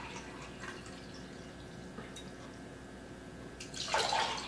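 Water poured from a glass pitcher into a 16-ounce drinking glass: a faint trickle that turns into a louder, splashing pour near the end.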